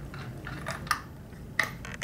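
A spark plug being unscrewed by hand from a chainsaw engine and lifted out: quiet handling with a few light clicks, the sharpest about a second in and again near the end.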